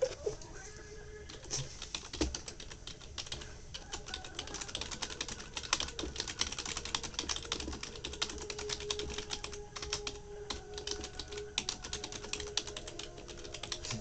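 Typing on a computer keyboard: rapid, irregular key clicks.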